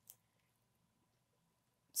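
Near silence: room tone with a faint steady high hum.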